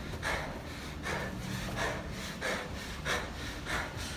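A person walking briskly on carpet, with soft rustling sounds about every two-thirds of a second, in step with the strides. A faint steady hum lies underneath.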